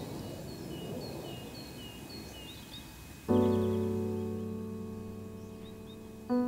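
Birds chirping in short repeated calls over faint outdoor background noise. About three seconds in, a piano chord is struck and left to ring, slowly fading.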